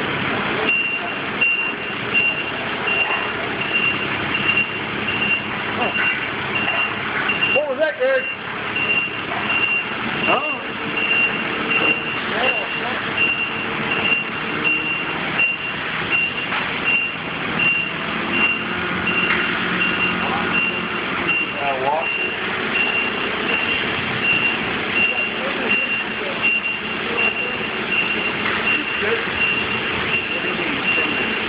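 A backup-alarm-style warning beeper sounding a short high beep about once a second, over steady machinery noise.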